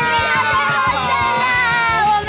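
Background music with a steady beat, its long held tones gliding slowly downward.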